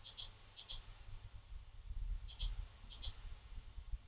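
Computer mouse button clicking: four pairs of quick, light clicks, two in the first second and two more just past the middle, over a low room rumble.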